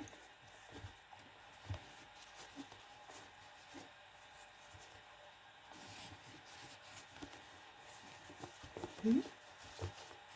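Faint handling sounds of crochet: soft scattered clicks and rustles of a crochet hook pulling thick cord through stitches. About nine seconds in, a short rising murmur from a person's voice.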